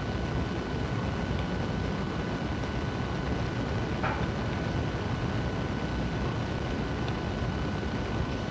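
Steady low background rumble with a faint steady whine, and a few faint soft ticks as paper pieces are folded by hand.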